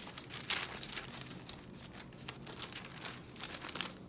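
Paper rustling and crinkling in short, irregular bursts as book pages are leafed through.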